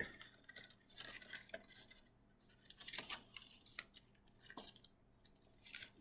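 Faint, scattered rustles and light clicks of a thin curling ribbon being pulled through a punched hole in a stiff paper wing and tied.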